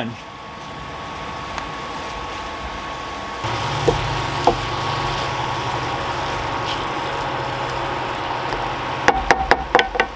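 Vegetables sizzling in a cast-iron skillet on an electric cooktop, with a wooden spatula stirring them and knocking against the pan. The sizzle gets louder about a third of the way in, and a quick run of spatula knocks comes near the end, over a thin steady tone.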